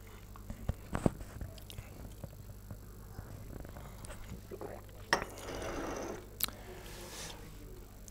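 Billiard balls clicking as a carom shot is played on a five-pin billiards table. There are two sharp clicks, about five seconds in and again a second and a half later: the cue striking the ball, then a ball striking a ball or a cushion.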